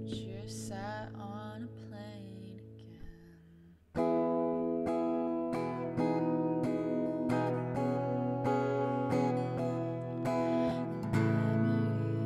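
Acoustic guitar with a woman singing: her voice trails off in the first couple of seconds and the guitar fades. About four seconds in, the guitar comes back loud with strummed chords and runs on without the voice.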